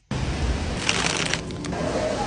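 Paper grocery bag rustling and crinkling as it is carried at a walk, loudest about a second in, over a low background rumble.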